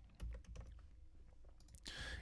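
A few faint, scattered clicks from a computer keyboard and mouse as text is copied and pasted.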